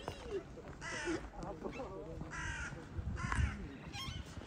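Crows cawing three times, about a second apart, with faint voices of people talking in the background.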